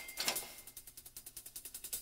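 Rapid, even mechanical ticking, about a dozen clicks a second, with a short ringing tone fading out just after the start.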